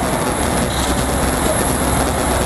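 Steady, dense rumbling noise with a low hum and a faint thin high whine underneath: the raw ambient sound of on-scene news footage, with no single event standing out.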